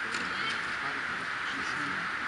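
Steady background hiss with faint, indistinct distant voices. There are no clear ball strikes.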